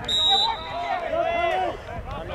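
A short referee's whistle blast right at the start, a single steady shrill note, followed by spectators' voices calling out from the sideline.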